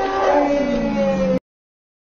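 A long howl from the grizzly bear as it doubles over, one held cry that falls slightly in pitch. It cuts off suddenly about one and a half seconds in.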